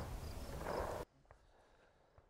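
Faint outdoor background noise for about a second, then the sound cuts off suddenly to dead silence.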